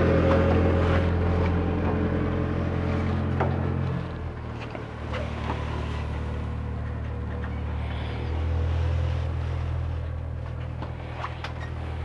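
Steady low motor hum that drops in level about four seconds in, with a few faint knocks.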